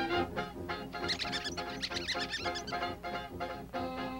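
Cartoon orchestral score playing a bouncy, rhythmic accompaniment. From about one second in to nearly three seconds, a quick run of high-pitched squeaks sounds over it.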